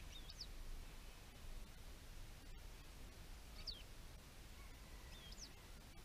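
Faint bird calls: three short, sharp chirps, spread a second or two apart, over a low steady rumble.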